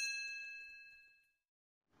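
Bell-like 'ding' sound effect of a subscribe-button animation, its chime ringing out and fading away over about the first second, then near silence.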